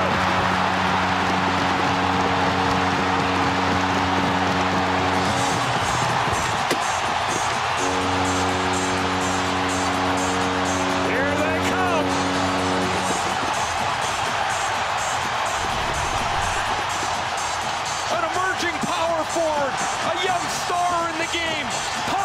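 Arena goal horn blowing in two long blasts over a loud crowd cheering a home goal. The first blast stops about five seconds in, and the second runs from about eight to thirteen seconds. The crowd noise continues after the horn, with whoops and voices near the end.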